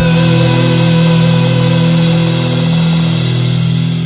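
Heavy metal band holding the final chord of a song: a long note with vibrato rings over a sustained low chord, easing off slightly near the end.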